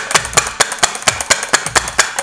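Hard plastic mixing tower of a Crayola Cling Creator clacking rapidly and steadily, about six knocks a second, as it is worked by hand to mix the cling solution in its mixing tube.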